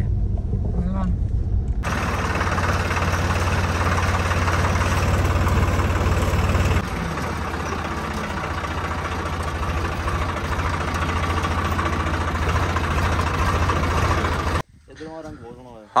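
Swaraj farm tractor's diesel engine running with a steady low note, dropping slightly in level about seven seconds in and cutting off suddenly near the end. The first two seconds hold only quieter car-cabin noise.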